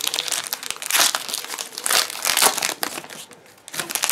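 Foil Pokémon booster-pack wrapper crinkling as the pack is opened: a dense, crackly rustle that thins out about three seconds in, with a short burst again just before the end.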